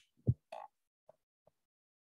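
A short, low, throaty croak-like sound from a person about a quarter second in, followed by a brief higher mouth noise and a couple of faint clicks.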